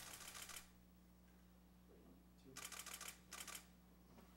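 Ceremonial rifles handled in drill movements: short, quiet rattling clatters of the rifles' fittings and slings. One rattle fades out just after the start, and two more follow close together about two and a half to three and a half seconds in.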